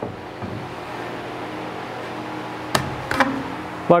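A single sharp knock about three-quarters of the way through, over a steady hiss with a low hum: a used wooden 2x4 knocking against the stud-wall framing as it is fitted into place.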